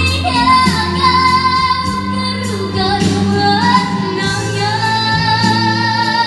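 A young female vocalist singing a Malay song live into a microphone over instrumental accompaniment, holding long sustained notes, with a step up in pitch about four seconds in.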